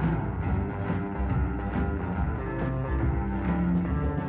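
Pop band playing an instrumental passage with no singing: an electric guitar picks the lead over bass and a steady drum beat.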